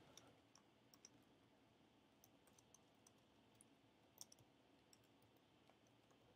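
Faint, scattered keystrokes on a computer keyboard: irregular single clicks against near silence, with one slightly louder cluster a little past the middle.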